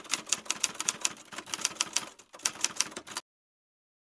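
Typewriter keystroke sound effect: a quick run of sharp typing clicks, several a second, that cuts off suddenly about three seconds in.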